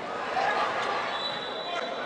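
Indoor futsal game: voices of players and spectators carrying in a large gymnasium, with the ball thudding on the court floor and a louder swell of voices about half a second in. A thin steady high-pitched tone sounds from about a second in.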